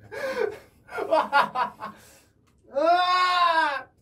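Young men's voices during an arm-wrestling bout: a short outburst, then about a second of choppy laughter, then one long strained cry whose pitch rises and falls, the effort of pushing against the opponent's arm.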